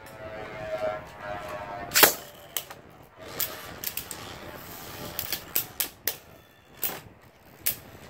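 Beyblade spinning tops in a plastic stadium: a steady whir from a spinning top, a loud sharp clack about two seconds in as the second top enters the dish, then irregular clicks and clacks as the tops strike each other.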